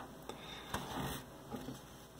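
Faint handling noise: a few light ticks and soft rubbing as an M.2 SSD is lined up over its motherboard slot among the cables.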